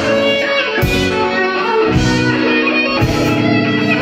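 Live rock band playing an instrumental passage: electric guitars holding chords over drums, with a hard drum hit about once a second.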